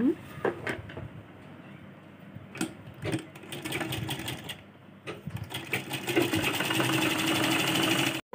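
DEEPA household sewing machine: a few handling knocks as the fabric is positioned, then from about five seconds in the machine stitching in a rapid, even run.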